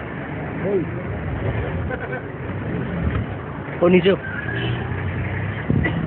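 A vehicle engine runs steadily as a low rumble under scattered men's voices. A louder burst of talk comes about four seconds in.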